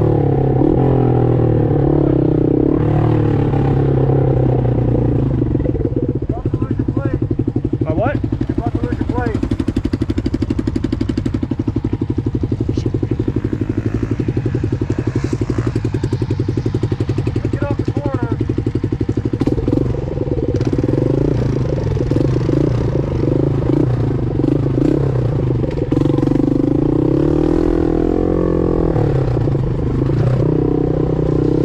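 Kawasaki KLR250's single-cylinder four-stroke engine running as the dirt bike is ridden along a trail. It holds a fairly steady note through the middle, then rises and falls in revs through the last third.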